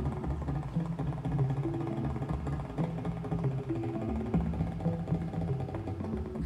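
Live improvised electronic and percussion music: a low bass line moving in short stepped notes under a busy pattern of quick percussive hits.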